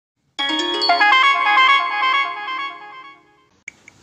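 A short, bright electronic chime melody: a quick run of stepping notes that rings on and fades away about three seconds in.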